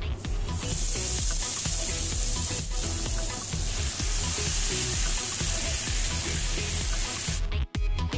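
Mustard seed, tomato and onion paste sizzling in hot cooking oil in a frying pan as it is poured in. The sizzle begins about half a second in and cuts off suddenly near the end, over background music with a steady beat.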